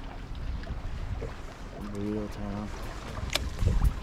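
Wind buffeting the microphone over small waves lapping at a bass boat's hull, with a sharp click a little past three seconds in.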